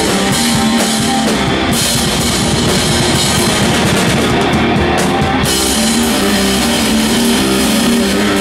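Live metal band playing loud: distorted electric guitars holding sustained chords over a drum kit, with dense cymbal-heavy drumming that thins out for a few seconds in the middle.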